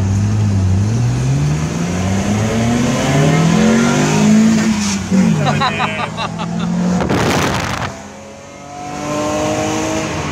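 BMW E30's M20B20 2.0-litre straight-six engine, heard from inside the cabin, revving hard with its pitch climbing for about four seconds up to the rev limiter, where it briefly stutters. A loud rush of noise comes about seven seconds in, the engine drops away on a gear change, and the revs climb again in the next gear near the end.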